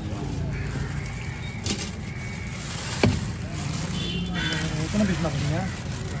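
One sharp chop of a heavy fish-cutting knife striking the wooden chopping block about halfway through, with a lighter knock a little earlier, over a steady background of market voices.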